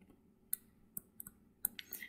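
Stylus tip tapping against a tablet screen while handwriting: a few faint, sharp, irregular clicks, several close together near the end.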